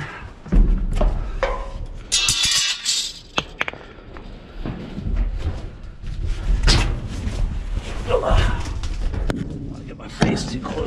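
Thumps and knocks on the walls of a steel dumpster as a person climbs in and moves about inside. There is a heavy thud about half a second in and a brief high metallic scrape or squeal around two seconds in.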